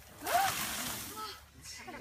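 A rushing, scraping noise as a man slides quickly down the trunk of an açaí palm, with a short exclamation rising in pitch near its start. The noise dies away after about a second and a half.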